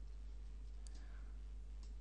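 Faint room tone with a steady low hum, and a single computer mouse click a little under a second in.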